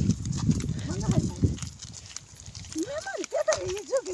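Walking on a dirt track: footsteps and handling rumble for the first second and a half, then a voice rising and falling in pitch near the end.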